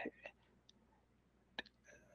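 Near silence, broken by a short, faint click about one and a half seconds in and a fainter tick just after.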